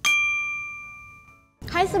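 A single bell ding: one struck, ringing tone that starts suddenly and fades away over about a second and a half, the notification-bell sound effect of a subscribe animation.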